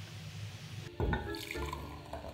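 Rain falling, a steady hiss. About a second in, the hiss gives way to liquid being poured into a mug, over background music.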